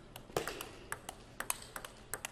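A celluloid-type table tennis ball clicking off the rackets and the table in a fast rally, with sharp, short hits a few times a second.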